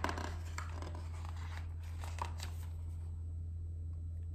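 Pages of a picture book being turned by hand: a few soft paper rustles and flicks in the first two seconds or so, over a steady low hum.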